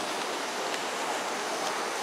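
Steady, even hiss of rain falling.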